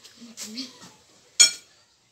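A single sharp, ringing clink of a metal spoon against a dish about a second and a half in, after a few faint, brief voice sounds.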